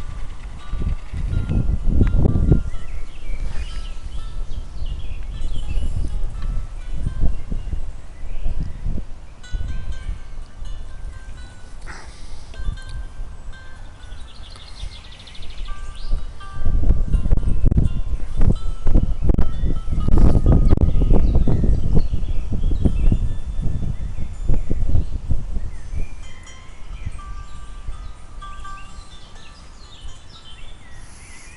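Wind buffeting the microphone in gusts, heaviest in the second half, with faint bird chirps in the background.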